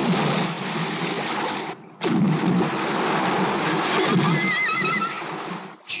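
Film sound effects of an orca attacking a great white shark: heavy churning and splashing water in two long stretches, broken briefly about two seconds in. About four seconds in comes a short, wavering high squeal.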